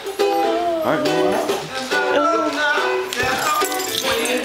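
A voice singing a melody over steadily strummed acoustic string accompaniment, an informal live jam.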